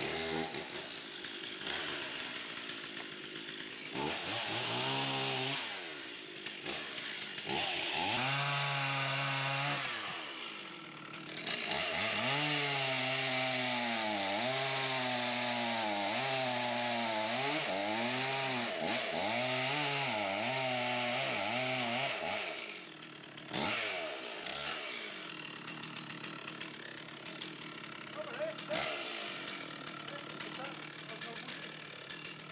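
Chainsaw cutting through a fallen tree trunk, in two long cuts with its engine pitch wavering up and down under load, the second running about ten seconds. It is quieter near the end.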